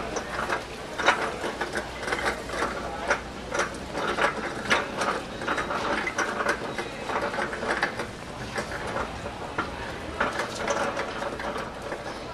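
Cart rolling over a concrete floor, its casters and frame rattling in a dense, irregular clatter of clicks and knocks.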